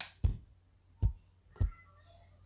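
Four sharp single clicks spread over about a second and a half, from a laptop trackpad being clicked in the scanning software to start a scan.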